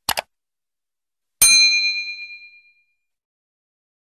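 Sound effects for a subscribe-button animation. There are two quick clicks, like a mouse click on the button. About a second and a half in, a single bright bell ding follows and rings away over about a second.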